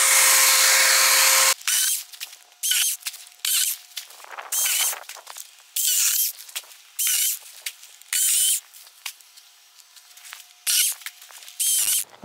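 A Saker 20-volt mini cordless chainsaw's electric motor runs with a steady whine and cuts off about 1.5 s in. It is followed by a string of short, separate rustling and crackling bursts of dry palm fronds being pulled and handled.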